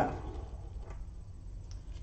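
A couple of faint clicks from hard resin pieces being handled (a cast resin mirror frame and its mirror insert), over a low steady hum.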